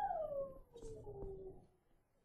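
An animal's long whine, sliding steadily down in pitch and fading out before the end, with a few faint clicks.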